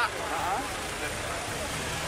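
Passing motorcycle traffic on a wet road: a steady hiss of tyres with a low engine hum, after a brief bit of speech at the start.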